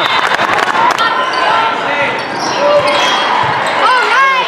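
Echoing din of a busy volleyball hall: a quick run of ball hits and bounces in the first second, then a steady wash of distant voices and court noise, with shouted voices again at the very end.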